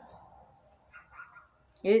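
A faint, short cry from a pet animal about a second in, in an otherwise quiet room. A woman starts speaking near the end.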